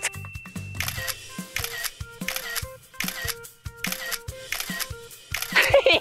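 A rapid series of camera shutter clicks, two to three a second, over background music.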